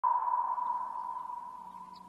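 A single steady electronic tone at one fairly high pitch, sounding suddenly and then slowly fading away.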